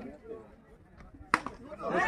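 A single sharp crack of a cricket bat striking the ball about one and a half seconds in, followed near the end by spectators starting to shout.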